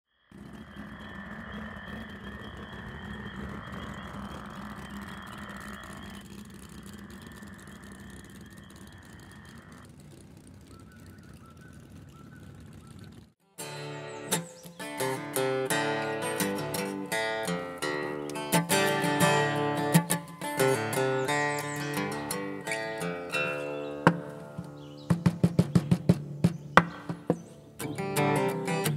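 Steady outdoor ambience with bird chirps for about the first thirteen seconds. After a brief cut, an acoustic guitar starts playing a country intro, picked and strummed, with a run of sharp strums near the end.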